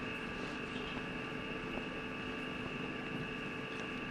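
Steady hum and hiss of an old film sound recording: several constant tones over an even hiss, with no other event.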